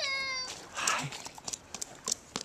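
A toddler's high-pitched squeal, held for about half a second, followed by a short breathy burst. Small boots then step through wet slush in light, uneven scuffs.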